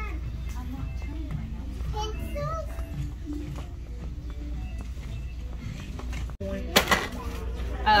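Indistinct voices, a child's among them, over background music and a steady low hum. About six and a half seconds in the sound drops out briefly and is followed by a short, sudden loud noise.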